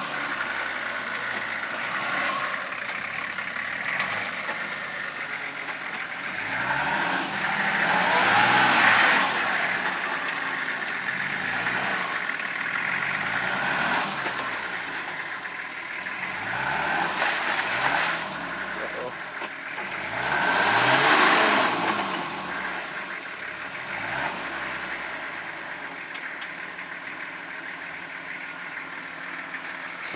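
A four-wheel-drive wagon's engine revving up and down in repeated bursts as it struggles up a muddy slope, its wheels spinning in the mud. The two loudest surges come about eight seconds in and again about twenty-one seconds in.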